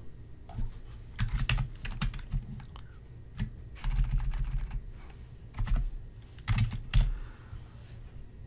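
Typing on a computer keyboard: irregular keystrokes in short runs with pauses between.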